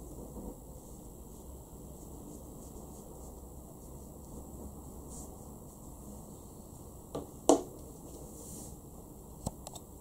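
Steady faint room hiss, broken by a pair of light knocks about seven seconds in, the second the louder, and a small click near the end, as a calligraphy brush is set down on the wooden desk.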